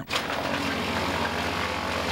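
Engine-driven brush chipper running at speed while pine branches are fed into it and chipped. A steady engine drone sits under an even, loud rush of chipping.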